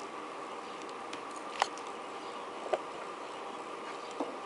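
A coin prying apart the stacked plastic sections of a threading tool: a sharp click about a second and a half in and a smaller one near three seconds, over a steady faint hum.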